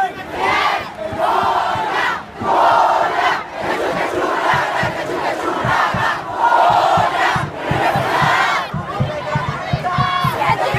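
A large crowd of marchers shouting a protest chant together, in short phrases with brief breaks between them, and a fast low pulse underneath in the second half.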